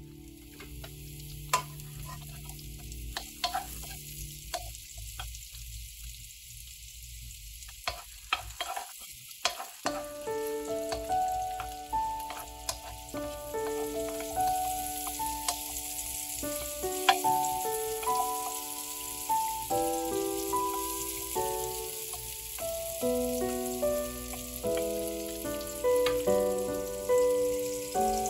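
Halved mushrooms sizzling in melted butter in a nonstick wok, with scattered clicks of wooden chopsticks stirring them. Background music with a simple stepped melody comes in about ten seconds in.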